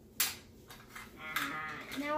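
A single sharp click of small plastic toy parts being handled, then near the end a drawn-out vocal sound from a person's voice begins, its pitch bending.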